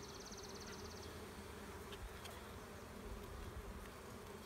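Honey bees buzzing around an open hive: a faint, steady hum of many wings.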